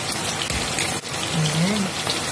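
Chicken adobo and potatoes sizzling and bubbling in a frying pan on a gas flame, a steady crackling hiss as the sauce boils down.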